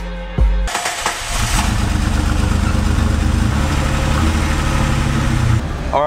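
Music with a heavy bass beat, cut off under a second in as a car engine starts on the ignition key, then runs steadily with a low hum under a rough hiss.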